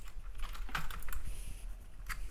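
Irregular light clicks and taps, bunched about half a second to a second in, over a low steady hum.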